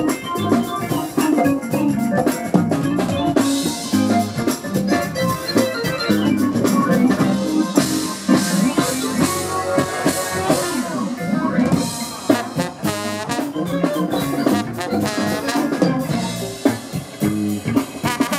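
Live funk band playing, with drum kit, keyboard and horns together; wavering held notes come in over the band in the second half.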